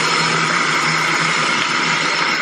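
Water running steadily from a bathroom tap while face cleanser is rinsed off.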